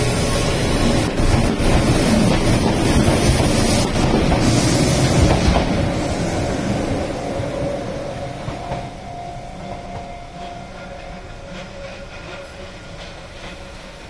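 Keihan 600 series two-car electric train running past close by, its wheels clattering on the rails, then fading steadily as it draws away.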